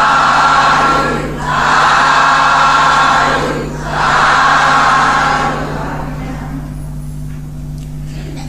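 A Buddhist congregation calling out together in three long, drawn-out swells of massed voices, the customary threefold 'sadhu' of assent at the close of the homage and blessing verses; the voices die away after about five and a half seconds over a steady low hum.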